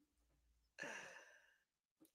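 A faint sigh with falling pitch, about a second in, after a laugh; otherwise near silence.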